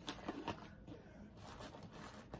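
Faint rustling and soft handling noises of wrapped items being placed in a cardboard box, with a few light clicks in the first half second and then a low hush.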